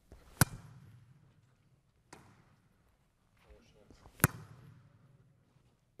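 A volleyball smacked off the forearms in forearm passes (bumps): two sharp hits about four seconds apart, each echoing in a large sports hall, with a fainter knock between them.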